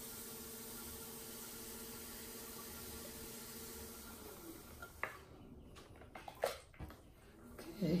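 Electric potter's wheel running with a steady motor hum while a metal trimming tool cuts ribbons of leather-hard clay from an inverted bowl. About four seconds in the hum dips and falls away as the wheel slows, followed by a few light clicks.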